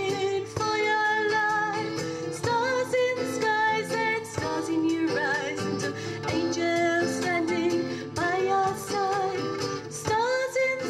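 A woman singing a song live, holding some notes with vibrato, over strummed acoustic guitars.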